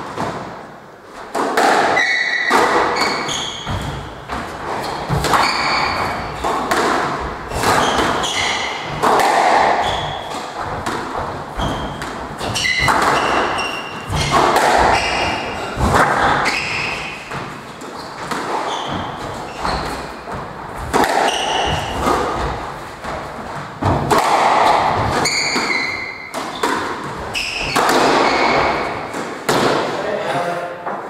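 Squash rally: the ball is struck by rackets and smacks off the walls and floor in a long series of sharp thuds, echoing in the enclosed court. Short high squeaks of court shoes on the wooden floor come between the hits.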